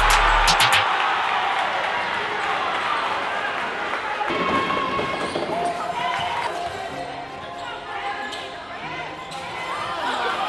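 Rap music with a heavy bass line cuts off just under a second in, giving way to the live sound of a high school basketball game in a gym: a basketball bouncing on the hardwood court amid crowd chatter and shouted voices.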